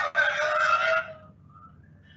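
Unwanted background sound coming through a participant's unmuted microphone on an online class call: a loud, drawn-out pitched sound with several tones that cuts off about a second in, followed by faint fainter tones.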